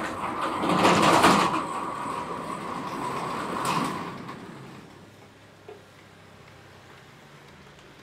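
A large sheet-metal sliding gate rolled open along its track: a clank as it starts, a grinding roll for about four seconds, and another clank as it reaches the end.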